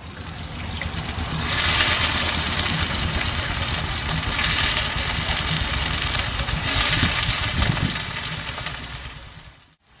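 Hot oil sizzling in a metal wok over a wood fire as chopped vegetables fry, the sizzle swelling louder three times, over a steady low hum.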